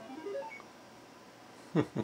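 TRS-80 Color Computer 2 program sounding a quick run of short electronic beeps at changing pitches through the TV's speaker. The beeps stop about half a second in. A short laugh comes near the end.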